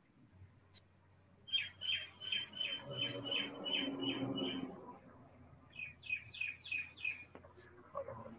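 A bird calling in the background: a run of about a dozen quick, sharp chirps at about four a second. After a short pause comes a second, shorter run of about six chirps.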